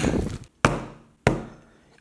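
Two sharp knocks about two-thirds of a second apart: a hard fidget spinner jabbed against a shrink-wrapped cardboard box, trying to break through the tightly sealed plastic wrap.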